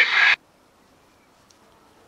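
A man's voice received on an AM car radio slope-detecting a 2 m FM repeater signal, with hiss behind it, cut off abruptly about a third of a second in. Then near silence with one faint click.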